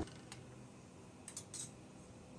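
A few faint clinks of a metal spoon against the rim and sides of a pressure cooker pot while thick mutton gravy is stirred: one about a third of a second in, then two close together about a second and a half in.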